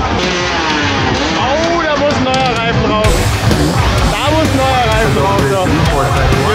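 Hard enduro dirt bikes revving up and down as riders work over log and tyre obstacles, mixed with music and voices.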